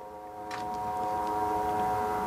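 A steady motor hum made of several fixed pitches, growing louder about half a second in and then holding.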